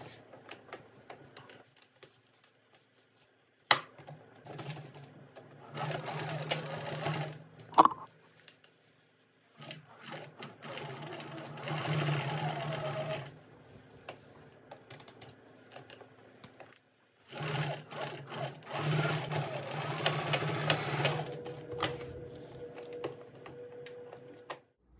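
Domestic electric sewing machine stitching lining to coat fabric in three runs of a few seconds each, with pauses between and a couple of sharp clicks.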